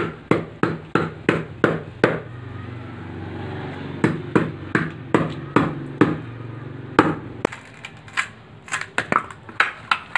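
A blade chopping in steady, sharp strokes about three a second. The strokes stop for about two seconds and then resume, and lighter, irregular knocks follow near the end. A steady low hum runs underneath for a few seconds in the middle.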